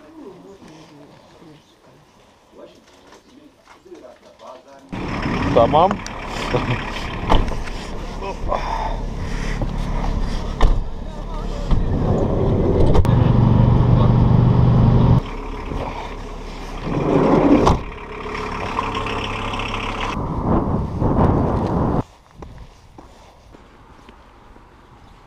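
Engine and road noise heard inside a moving minivan's cabin: a steady low hum that starts suddenly about five seconds in and cuts off shortly before the end.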